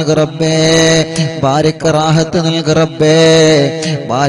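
A man chanting an Islamic supplication in long, drawn-out melodic phrases. He holds notes for a second or more and glides between them in pitch.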